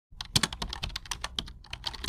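Computer keyboard typing sound effect: a rapid, irregular run of key clicks, about seven a second.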